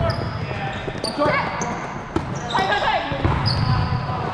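Sneakers squeaking on a hardwood gym floor as volleyball players shuffle and move during a rally: many short, high squeals, some sliding up or down in pitch, over the rumble of footsteps in a large reverberant hall. A single sharp knock comes about two seconds in.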